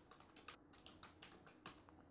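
Faint typing on a computer keyboard: about a dozen quick, uneven keystrokes.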